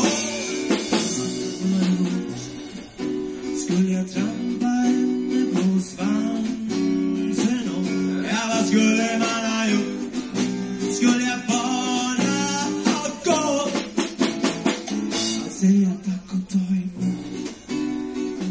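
A rock band playing live: guitar and drums over a steady, repeating bass line, with a voice singing in stretches. It is an audience recording made on a portable cassette recorder with a microphone.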